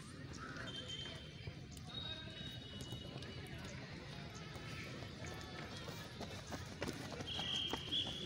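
Footsteps of several runners on a dirt track, coming closer and clearest near the end. Faint voices are in the background. Short high steady tones come and go, and a louder high tone sounds for the last second or so.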